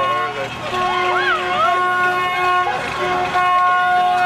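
Car horns honking in long held blasts in celebration, briefly breaking off about three seconds in, with people whooping and shouting over them.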